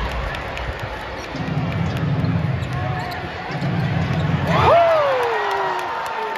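Basketball being dribbled on a hardwood court during live play, with many short sharp bounces over a steady arena crowd hum and two stretches of low thumping from the arena sound system. Near the end a loud call glides down in pitch above the crowd.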